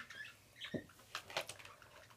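Faint handling sounds of small plastic lip balm tubes and their packaging: a few scattered light clicks and taps.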